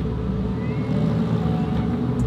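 Supercar engine running steadily at low revs, heard from inside the cabin in slow traffic.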